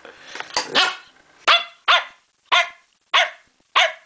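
Staffordshire bull terrier puppy barking: a run of about six short barks, one every half second or so, each dropping in pitch.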